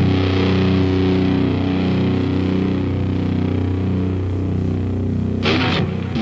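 Distorted heavy metal guitar holding a droning chord, broken by a sudden noisy hit near the end.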